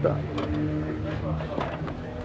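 The VW Jetta's in-tank electric fuel pump running with the ignition switched on, a steady hum that weakens near the end, with light handling of the plastic pump module.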